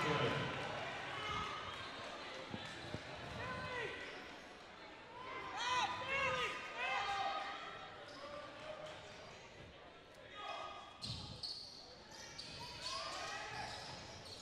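Faint gym ambience in a large hall during a stoppage in play: scattered distant shouts from players and the bench, and a basketball bounced a few times on the hardwood court.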